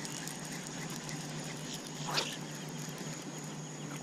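Quiet outdoor ambience at a pond: a steady high-pitched whine over a faint low hum and hiss, with one short sound about two seconds in.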